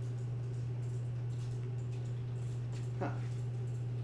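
A steady low hum runs throughout, with a short spoken "Huh?" near the end.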